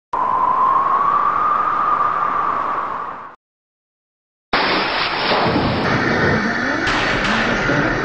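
An added rushing sound effect with a steady whistling tone, fading out after about three seconds. After a second of silence, broadcast game audio starts abruptly: a crowd with voices over it.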